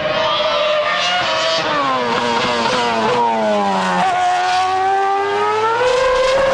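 Ferrari F10 Formula One car's 2.4-litre V8 running at high revs. Its pitch drops in several steps over the first four seconds as it changes down, then rises steadily from about four seconds in as it accelerates.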